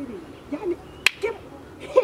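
A single sharp snap of a man's hands about a second in, between short bits of his voice.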